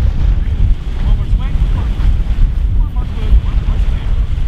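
Wind buffeting a camera microphone outdoors: a loud, fluttering low rumble. Faint voices come through it about a second and a half in and again near three seconds.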